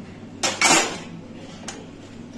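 Metal parts of a toroidal coil winding machine handled by hand: a sharp metallic click about half a second in, then a short rattle, and a lighter click later.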